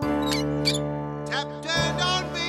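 Bright background music with held chords, over which three short rising squeaks sound: a cartoon tap handle being turned on.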